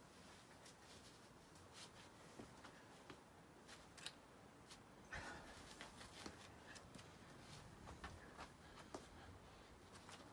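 Near silence with faint, scattered scuffs and taps of climbing shoes and hands on the rock as a climber moves between holds, with a sharper click about four seconds in.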